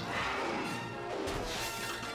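Animated-series action soundtrack: dramatic background music with a crashing sound effect from the fight.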